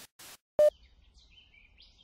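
A short, loud click with a brief ringing tone about half a second in, then faint bird chirps over quiet outdoor background.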